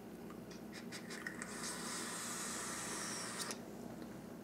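Faint hiss of a long draw on a Helios rebuildable dripping atomizer as its three-wrap 26-gauge coil fires. Air and vapor rush through the airflow holes for about two seconds, then cut off sharply. A few faint clicks come before it.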